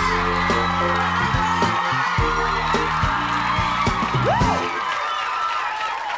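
Studio audience cheering, screaming and whooping over loud walk-on music with a heavy synth bass line. The music cuts off about four and a half seconds in, and the crowd's cheers and whoops carry on.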